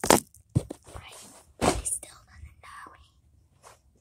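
Soft whispering with a few short rustles and knocks close to the microphone, dying away near the end.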